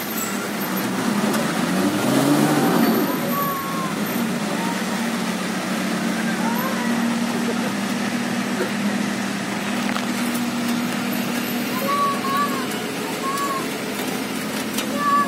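Vehicle traffic on a wet mountain road: an engine revs up and falls away about two seconds in, then a steady engine hum, over an even hiss of tyres on the wet road and rain.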